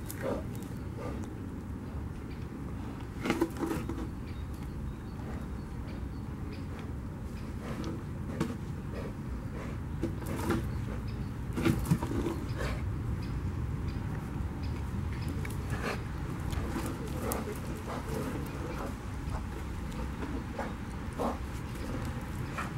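Brown bear gnawing and crunching a chunk of wood, with scattered short cracks and knocks and heavy puffing breaths, over a steady low rumble.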